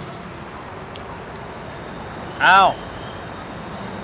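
Steady street ambience with traffic noise and a faint click about a second in, broken about two and a half seconds in by one short spoken exclamation, "อ้าว" ("oh!").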